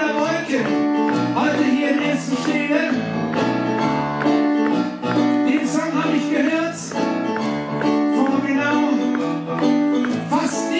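Live music: a man singing into a microphone while playing an electric stage piano, amplified through a PA.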